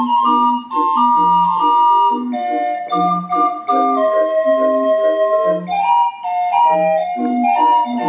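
Mechanical organ playing a lively tune: low bass notes, short repeated accompaniment chords and a sustained, flute-toned melody on top.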